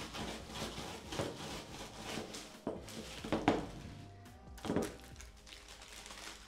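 A wooden rolling pin striking Oreo cookies in a plastic zip-lock bag on a wooden worktop, crushing them to crumbs: a few separate thuds spread over several seconds. Background music plays underneath.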